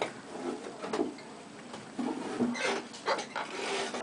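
Long-handled clog maker's bench knife shaving a wooden clog blank: a few scraping cuts in the second half.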